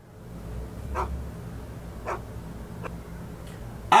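Low, steady room rumble with three faint, short sounds about a second apart.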